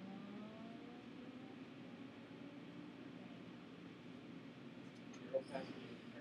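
Quiet room tone with a low steady hum, and a short faint voice sound about five seconds in.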